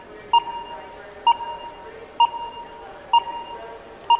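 Electronic sonar-like ping sound effect repeating about once a second, five pings in all. Each ping is a sharp, ringing tone that fades quickly, over a faint low steady hum.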